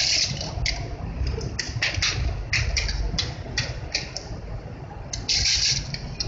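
Hands pressing chocolate shavings onto the side of a cake and rubbing against its foil-covered cake board: a series of short, sharp rustling scrapes, with two longer rustles near the start and near the end.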